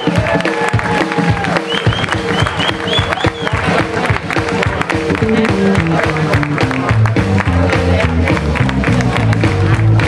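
Live electric blues band playing: electric guitars over a drum kit, with a line of low notes stepping from pitch to pitch in the second half.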